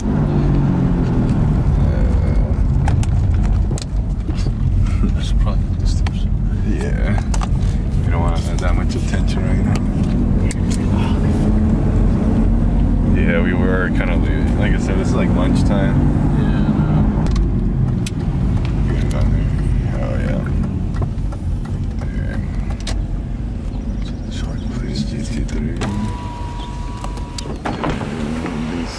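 Road noise inside a moving car's cabin: a steady low rumble of engine and tyres, with scattered clicks and rattles. A thin steady tone sounds for the last couple of seconds.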